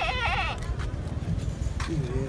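A sheep bleats once at the start, a short quavering call of about half a second, over a steady low rumble of background noise.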